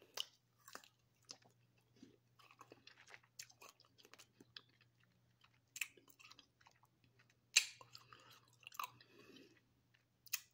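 A person biting into and chewing a frozen jello-coated grape: irregular soft crunches and wet mouth clicks, the loudest crunch about three-quarters of the way through.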